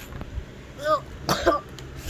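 A person's voice making two short non-word vocal sounds, a little under a second in and again about a second and a half in.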